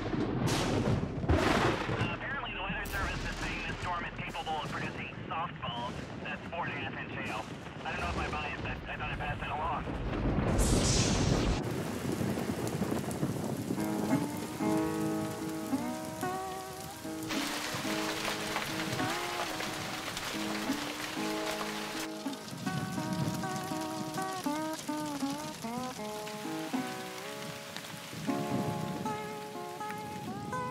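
Heavy rain and thunder: a loud crack right at the start, then rumbling and pattering over the first dozen seconds. From about twelve seconds in, background music plays over the continuing rain.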